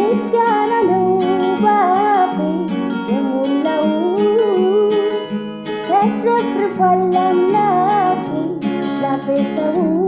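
A woman singing an Amharic Protestant worship song, her held notes wavering with vibrato, over strummed acoustic guitar chords.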